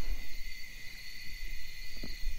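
Steady high insect trilling at two pitches, over an uneven low rumble.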